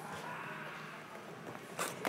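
Faint rustle of clothing and scuffing of feet on a gym floor as a boxer moves in to attack, with one short scuff near the end.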